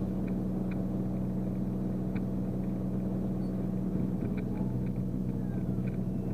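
Single-engine Beechcraft Bonanza's piston engine and propeller heard from inside the cockpit: a steady low drone, with a few faint ticks.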